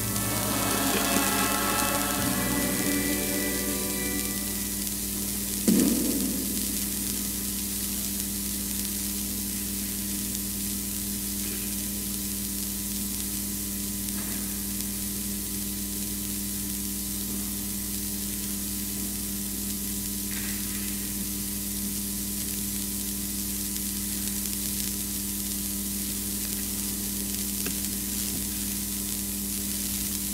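Sung music dies away over the first few seconds, then a steady low electrical hum over even hiss, with one brief bump about six seconds in.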